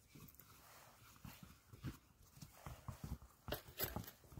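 Faint, irregular knocks and clicks of small objects being handled and set down on the ground, with a few louder ones near the end.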